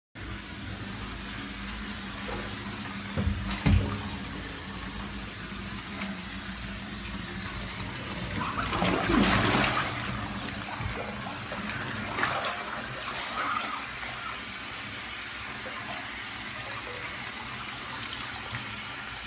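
Water running into a bathtub, a steady rush throughout, with a couple of sharp knocks about three seconds in and a louder spell of splashing around nine seconds in.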